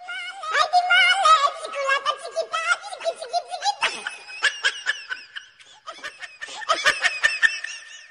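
High-pitched laughter in quick breathy pulses, breaking off briefly past the middle and then starting up again near the end.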